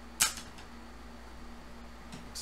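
A single sharp plastic clack just after the start, as a hard plastic graded-card slab is set down or knocked against another, followed by a low steady hum.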